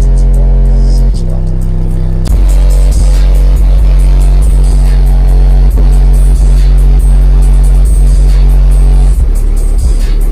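Bass-heavy music played very loud through two 15-inch car subwoofers in the back of an SUV, heard from inside the vehicle. Long, deep bass notes shift pitch about a second in, again a little after two seconds, and near the end, with a steady beat over them.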